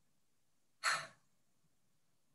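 A woman's single short audible breath, about a second in; the rest is near silence.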